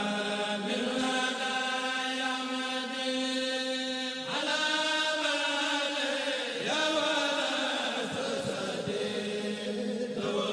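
Unaccompanied male voices chanting a Mouride khassida in long, held notes, with no beat. The melody shifts pitch about four seconds in and again near seven seconds.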